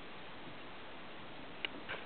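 Faint steady hiss with one sharp click near the end, followed by a softer tap.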